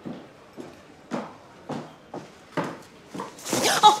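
Footsteps of a woman in heeled shoes walking down steps, about two steps a second. Near the end comes a louder scuffling bump and rustle as she collides with a man.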